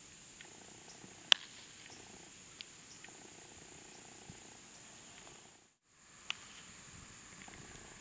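Steady high-pitched insect drone over faint outdoor ambience, broken by a sharp crack about a second in and a softer one a little after six seconds. The sound drops out briefly just before the second crack.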